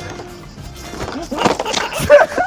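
Excited shouting and cries from people watching, starting about a second in and growing louder, over background music.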